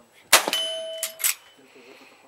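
A single rifle shot about a third of a second in, followed by about a second of ringing from a hit steel target. A second, quieter sharp crack comes just over a second in.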